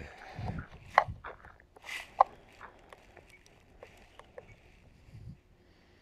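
Handling noise from a radio transmitter and its neck-strap lanyard: a few scattered sharp clicks and knocks, the loudest about one and two seconds in, with soft rubbing and low thumps between.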